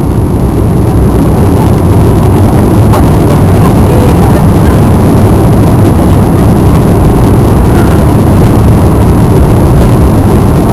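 Cabin noise of an Airbus A340-300's four CFM56 engines spooling up to take-off thrust, with the rumble of the take-off roll. It grows louder over the first two seconds, then holds as a loud, steady roar.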